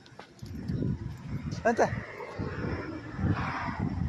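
Dog giving a short whine with a sharply bending pitch about one and a half seconds in, over a low rumble that begins just after the start.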